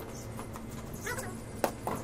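Two sharp knocks near the end, about a fifth of a second apart: a cricket ball bouncing on the concrete roof and then struck by the bat.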